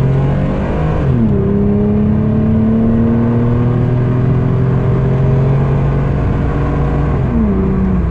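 A 1990 Nissan 300ZX's 3.0-litre V6 accelerating hard through the gears, heard from inside the cabin, on a car with a small exhaust hole. The revs drop with an upshift about a second in, climb steadily in the next gear, then drop again with another upshift near the end.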